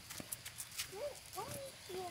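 Footsteps on a dirt path strewn with dry leaves and twigs: quiet, irregular taps and crackles. A soft voice comes in about halfway through.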